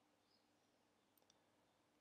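Near silence, with one or two very faint clicks a little after a second in.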